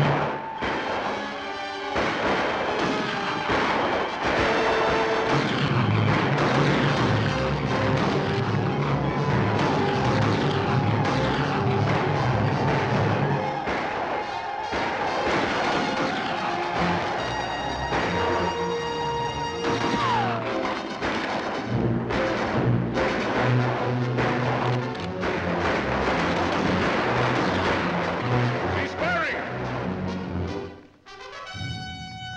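Orchestral film score over a battle soundtrack: repeated gunshots and the shouts of charging warriors, loud throughout.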